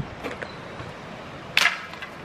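A thin dry stick hits an asphalt driveway about one and a half seconds in and breaks apart with a single short, sharp crack.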